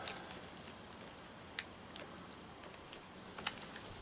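Raccoon eating at close range: faint, irregular clicks and crunches of chewing, with a couple of sharper ticks.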